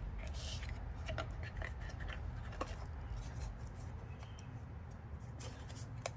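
Hands handling and pressing glued kraft paper and card pieces together: faint paper rustles and a few light taps, over a steady low hum.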